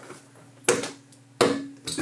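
Two sharp knocks, the first about two-thirds of a second in and the second about three-quarters of a second later. Each leaves a faint low ring, and a smaller click comes near the end.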